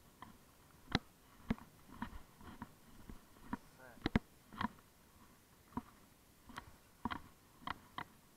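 Irregular short clicks and knocks, about a dozen, from a freshly caught bass being handled with the lure still hooked in its mouth; the sharpest pair comes a little after four seconds.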